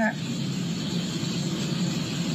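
Steady car-cabin noise: the even rumble and hiss of a car heard from inside.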